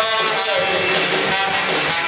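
Live rock band playing loud amplified music: electric guitar and drum kit, with a trombone playing over them.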